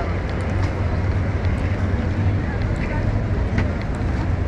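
Busy city street ambience: a steady low rumble of road traffic under the chatter of passing pedestrians, with some wind on the microphone.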